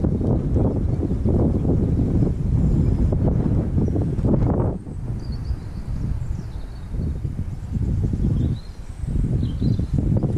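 Wind buffeting the microphone: a loud, gusty low rumble that eases off a little before halfway and picks up again near the end, with a few faint high bird chirps above it.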